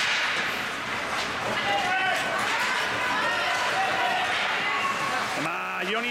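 Ice hockey game in progress: scattered spectators' voices calling out over a steady rink din, with sharp clacks of sticks and puck in the first couple of seconds. A close man's voice starts shouting just before the end.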